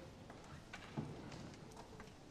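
A few faint taps and knocks, the loudest about a second in, from a book being handled against a wooden pulpit near the microphone.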